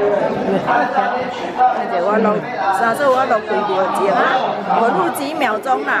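Several people talking at once: overlapping chatter of a tour group.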